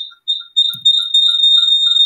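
An electronic alert: a steady high-pitched tone with a softer short beep repeating about four times a second beneath it.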